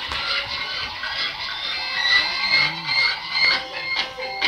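Music playing in a noisy hall, with some voices underneath.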